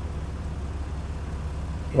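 An idling vehicle engine, a steady low hum.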